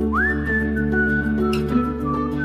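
Whistled melody in a soft song: one pure note slides up, is held, then steps down in pitch, over sustained backing chords. A single short tick sounds about a second and a half in.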